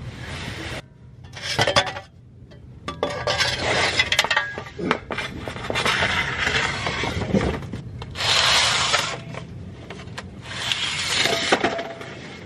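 Rubbing and scraping in bursts of about a second, with scattered light metallic clinks and knocks, from hand work on the drivetrain under the car while the transmission and flywheel come off.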